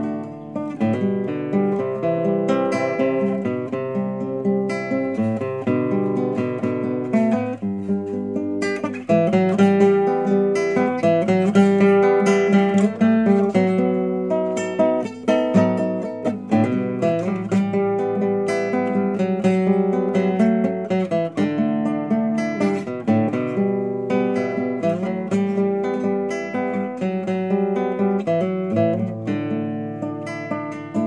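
Instrumental acoustic guitar music, a continuous run of plucked and strummed notes.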